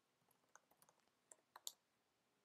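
Faint computer keyboard typing: a quick, irregular run of about a dozen light key clicks that stops shortly before the end.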